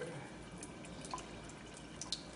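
Faint trickling and dripping of a thin stream of water spouting from a water-filled cylinder and splashing into a tray below, with scattered small drip ticks.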